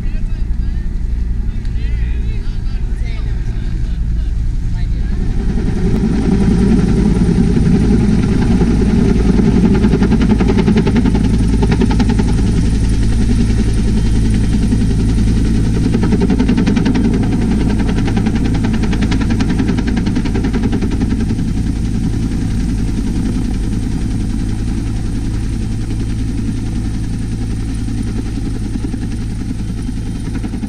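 Helicopter close by: a loud, steady rotor and engine drone that swells about five seconds in and eases off slowly through the second half.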